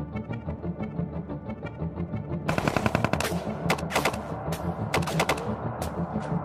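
Automatic gunfire: a fainter, fast, even rattle of rounds, then from about halfway louder, irregular bursts of sharp shots that stop just before the end.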